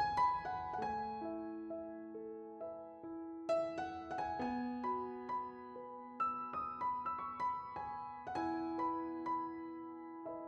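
Soft background piano music, with gentle held notes and a fresh chord struck every two to three seconds.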